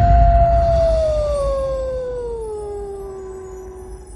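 A wolf's long howl, held steady, then sliding slowly down in pitch and fading, over a deep low rumble.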